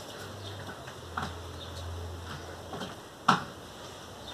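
Faint handling sounds of hands rubbing a leave-in hair cream together and working it into wet hair, over a low hum. A single sharp click comes about three seconds in.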